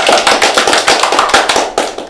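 A round of applause from a class of people clapping hands, loud and dense, breaking off right at the end.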